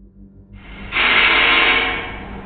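A woman's breath, breathy and almost like crying, heard as a loud rush of air that swells about halfway in and holds for about a second, like a sharp gasp of someone coming up out of water.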